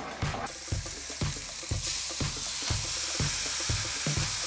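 Food sizzling in a hot pan, the hiss growing stronger about two seconds in, over background music with a steady beat of about two thumps a second.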